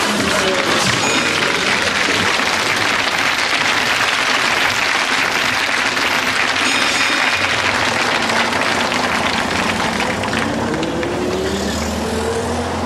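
Audience applauding steadily. Underneath, a bus engine runs, rising in pitch near the end.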